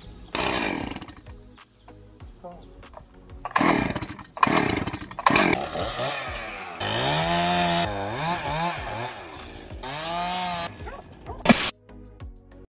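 Stihl chainsaw being pull-started: three hard pulls on the starter cord in the first half. Then a pitched sound that wavers up and down for about four seconds, and a short loud burst near the end.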